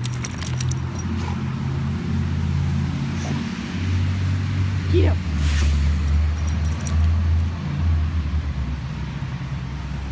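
Dog's collar tags jingling in short clusters as the dog noses and eats snow, near the start and again after the middle, over a steady low rumble on the microphone. A brief rising squeak about halfway through.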